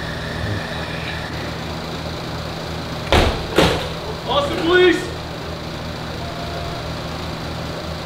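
Two loud bangs about half a second apart, then a short shouted voice, over the steady low hum of an idling vehicle engine.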